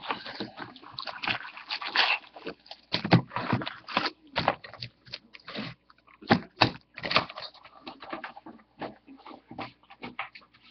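A cardboard hobby box of Bowman Draft Picks & Prospects baseball cards being opened by hand and its foil-wrapped packs pulled out and stacked on the table: a run of irregular rustles and knocks.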